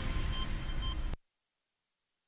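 Newscast bumper theme music with heavy bass, cutting off abruptly a little over a second in, leaving near silence.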